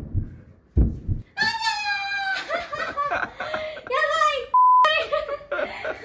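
Two low thumps in the first second, then a high-pitched voice exclaiming and laughing. About four and a half seconds in, a short steady beep, a censor bleep, covers the voice.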